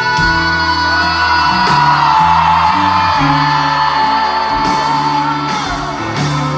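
A live rock band playing: a woman singing over electric guitar, bass guitar and drums.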